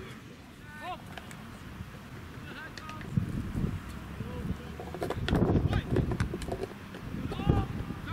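Footballers' shouts and calls across an outdoor pitch, short and scattered, louder and busier a little past the middle.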